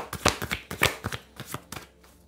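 A deck of chakra oracle cards being shuffled overhand by hand: a quick run of crisp card slaps, several a second, that slows and stops near the end.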